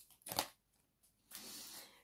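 Oracle cards handled on a card spread: a short sharp slap of a card being put down about a third of a second in, then a soft papery rustle of a card sliding into place near the end.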